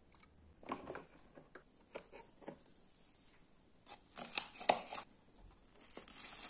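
Knife cutting through a crisp toasted sandwich on a wooden board: a cluster of short rasping crunches, loudest about four to five seconds in, after fainter scattered clicks and rustles.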